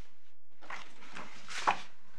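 Rustling and handling of paper as pages of a document bundle are turned, with one sharper knock about one and a half seconds in.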